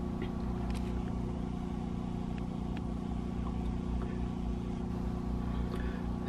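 Generator engine running steadily with an even, unchanging hum while it powers the boat's AC system through the shore-power cord.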